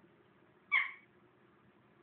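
A single short, high meow-like call from one of the pets, about three quarters of a second in.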